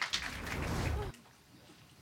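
Broadcast transition sound effect: a whoosh with a low rumble under an animated logo wipe, cutting off abruptly about a second in and leaving the audio nearly quiet.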